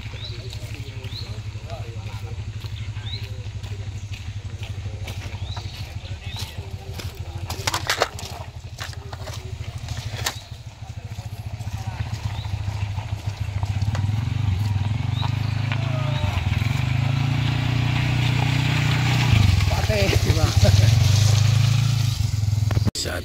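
A motorcycle engine running as it rides down a muddy slope, growing louder as it comes close in the second half, with voices talking in the background.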